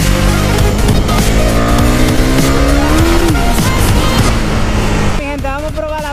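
Husqvarna Svartpilen 401's single-cylinder engine under way with wind noise, its revs rising for about two seconds and then dropping at a gear change, with music mixed underneath. About five seconds in, the engine gives way to music with singing.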